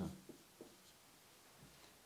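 A marker writing briefly on a whiteboard: a few faint short strokes, all but silent.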